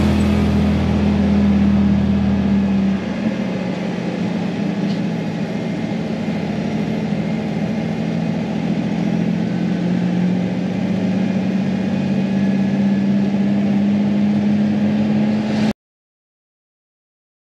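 Engine and tyre noise of an off-road vehicle cruising on pavement, heard from inside the cab as a steady drone. It cuts off suddenly near the end.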